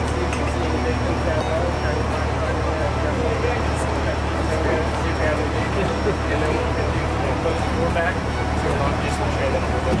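A steady low engine rumble that runs on unchanged, under indistinct voices.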